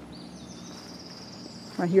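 A high, thin trill from a small animal lasting about a second and a half over a quiet outdoor background, with a woman's voice starting just before the end.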